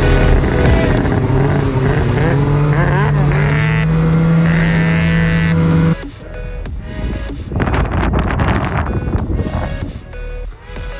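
Snowmobile engines running under electronic background music. About six seconds in, the music and the steady engine tone stop abruptly, and quieter, rougher noise follows.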